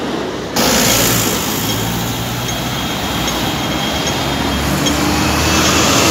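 Loud road traffic on a busy city street, with the low, steady drone of a double-decker bus engine running close by.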